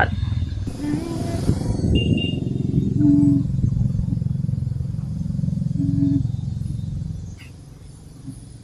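A motor engine running with a steady low rumble, which cuts off a little before the end.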